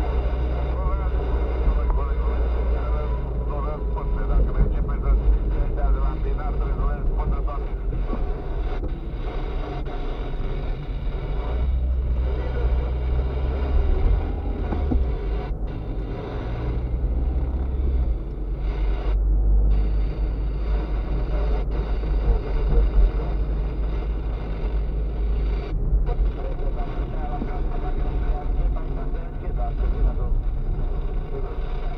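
A car driving, heard from inside the cabin: a steady low engine and tyre rumble throughout, with indistinct talk carried over it.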